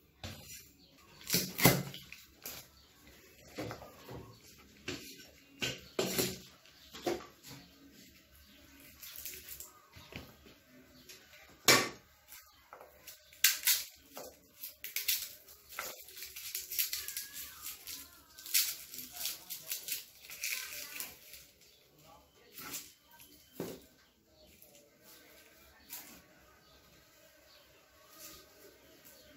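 Irregular sharp knocks and clicks of a cleaver and hands working on a wooden chopping board, with a garlic bulb being broken apart into cloves; the loudest knocks come about a second and a half in and again near the middle.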